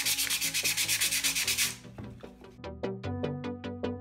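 Waterproof sandpaper wet-sanding a compacted aluminium-foil ball in fast, even back-and-forth scraping strokes. The strokes stop about two seconds in, and electronic music with a steady beat takes over.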